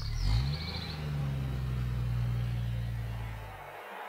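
A low droning bass tone over the PA loudspeakers, sliding up in pitch at the start, holding steady for about three seconds, then fading out.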